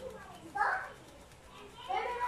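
Children's voices, with two short loud calls: one about half a second in and another near the end.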